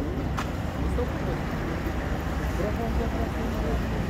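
Faint background voices over a steady low rumble, with a single sharp click about half a second in.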